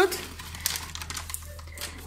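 Soft crinkling of a wet cat food pouch being handled, with small irregular clicks, over a low steady hum.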